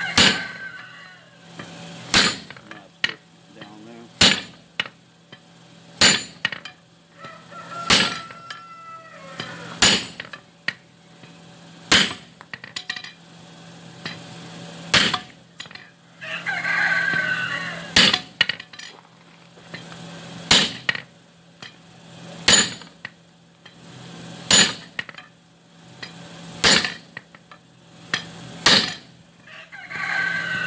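Heavy forging hammer striking a glowing hot steel bar on an anvil, single blows about every two seconds with a longer gap partway through, each with a short metallic ring.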